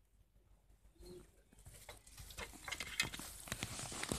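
Handling noise on a phone's microphone: faint rustling with a run of small clicks and taps that builds up over the last two seconds.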